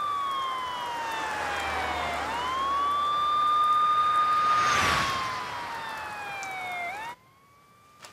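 Emergency-vehicle siren wailing: a high tone held, then gliding slowly down and snapping back up, twice over. About five seconds in, a rushing swell of noise rises and falls under it, and the siren cuts off suddenly about seven seconds in.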